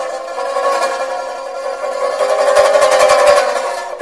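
Traditional Chinese instrumental music led by a plucked string instrument in rapid repeated plucking over held notes, swelling louder toward the end.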